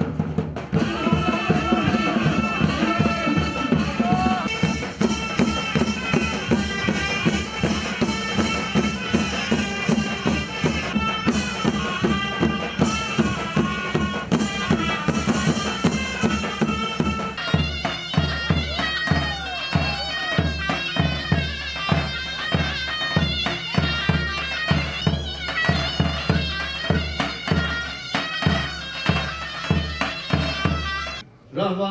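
Mehter band music: shrill zurnas play the melody over beating davul drums. About two-thirds through, the music changes to a different tune with heavier, evenly spaced drum beats.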